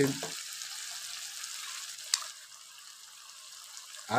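Meat sizzling in rendered animal fat in a frying pan as it is stirred with a wooden spatula, a steady hiss that softens in the second half. A single sharp click comes about two seconds in.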